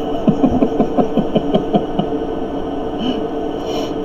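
A man chuckling, a quick run of short laughs through the first two seconds, then a breath near the end, over a steady low hum.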